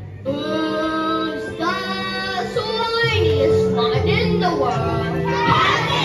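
A group of children singing a song with instrumental accompaniment. The music dips briefly at the start, then the voices come in with held and gliding notes over a steady bass line.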